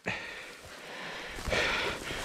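Dry tall grass rustling as a bird dog noses and pushes into a clump, with a louder rustle about one and a half seconds in.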